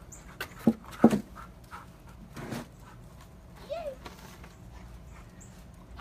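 A dog, with two sharp thumps close together about a second in and a short rising-and-falling whine near the middle.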